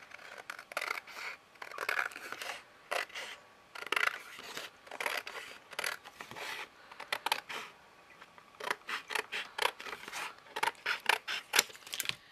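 Scissors cutting through a strip of thin white card: a run of irregular crisp snips, coming faster and closer together over the last few seconds.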